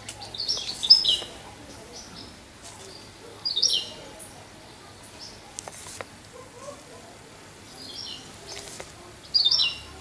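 A bird chirping in short phrases of a few quick high notes, repeating every few seconds, with the loudest phrases near the start and near the end.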